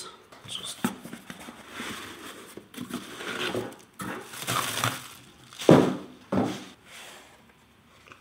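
Bubble wrap and a cardboard shipping box rustling and crinkling as a packed box is pulled out and unwrapped by hand, with two sharp knocks a little past the middle.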